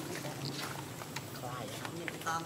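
A steady low hum with faint human voices, curving like speech, coming in near the end.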